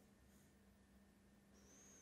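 Near silence: faint room tone with a low steady hum, and a brief faint high-pitched whistle that rises and falls near the end.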